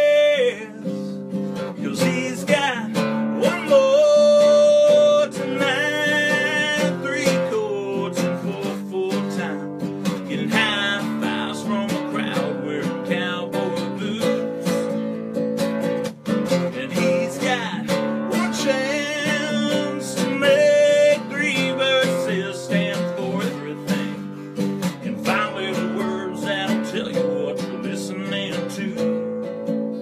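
A steadily strummed acoustic guitar with a man singing a country song over it, holding some long notes.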